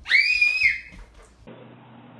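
A toddler's high-pitched squeal lasting about half a second, followed by a faint steady background hum.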